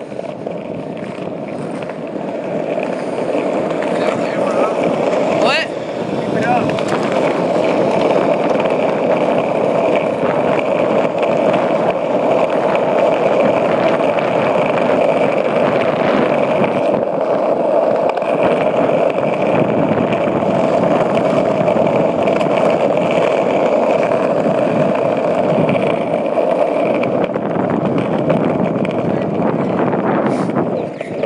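Skateboard wheels rolling fast down a concrete hill: a loud, steady rolling roar that grows louder over the first several seconds, then holds.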